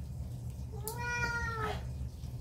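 A cat meowing once, a single call about a second long.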